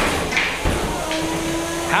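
Spinning drum weapon of a 3 lb combat robot striking its opponent: a sharp metallic hit right at the start and another about a third of a second later, then a low thud. A steady whine carries on afterwards.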